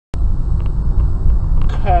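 Steady low rumble of a car driving slowly, at about 19 mph, heard from inside the cabin.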